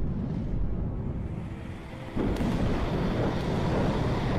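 Deep, noisy rumbling sound effect like thunder or an eruption from a film soundtrack, swelling suddenly louder about two seconds in.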